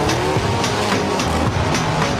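Loud rock intro music with a fast, steady beat.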